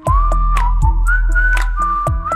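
Instrumental passage of a pop song: a high, thin, whistle-like lead melody sliding between notes over a deep held bass that comes in at the start, with regular ticking percussion.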